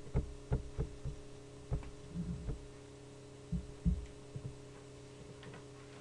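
Steady electrical hum, with about ten soft, irregular low thumps in the first four and a half seconds.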